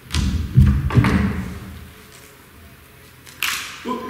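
Thumps and rustling from close handling of a microphone, loudest in the first second and a half, with a short, brighter rustle near the end.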